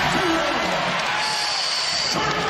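Basketball arena crowd cheering after a home-team basket, as a steady roar of noise, with a high steady whistle-like tone lasting about a second in the second half.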